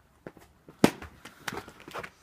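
Footsteps and scuffing on a paved street: a quick, uneven run of short, sharp steps and knocks, the loudest a little under a second in.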